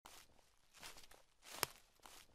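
Faint footsteps, a step roughly every three-quarters of a second, with one sharp click among them a little past halfway.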